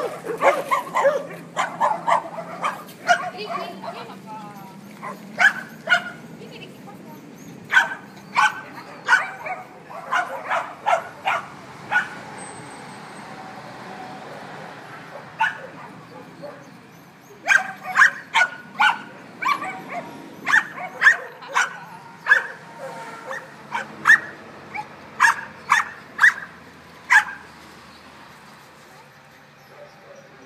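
Dogs barking repeatedly in runs of short barks, roughly two or three a second, with a quieter pause around the middle.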